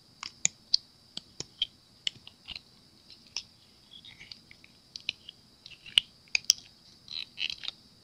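Scalloped silicone mould being flexed and peeled away from a cured epoxy resin coaster: irregular sharp clicks and small crackles as the silicone lets go of the resin, a few louder ones around six seconds in.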